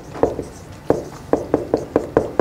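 Dry-erase marker writing on a whiteboard: a run of about eight short, irregular taps and strokes as the words are written out.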